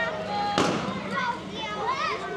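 Young children's high voices calling out and exclaiming, rising and falling in short calls, with a single sharp noise burst about half a second in.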